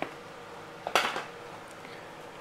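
A faint click, then one short clatter about a second in: old potting soil and a hard plastic piece knocking against a plastic tub as soil is loosened from a plant's root ball.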